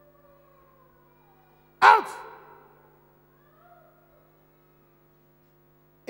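A man's single loud retching heave over a bucket about two seconds in, falling in pitch and trailing off over about a second, with faint moaning before and after it.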